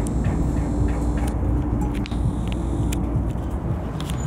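Motor vehicle running: a steady low rumble with a held hum through the first half and a shorter one later.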